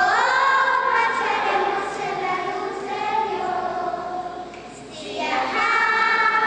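Children's choir singing long held notes in a phrase that fades out just before five seconds in, with the next phrase entering about five seconds in.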